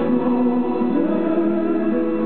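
Live ballad performance: a male baritone voice sings a sustained, gliding melody line through the PA, backed by cello and violins.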